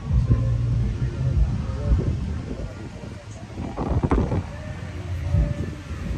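A low, dense rumble with people talking in the background.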